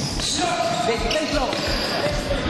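Futsal play on an indoor wooden court: the ball thudding as it is kicked and bounces, with shoes squeaking on the floor.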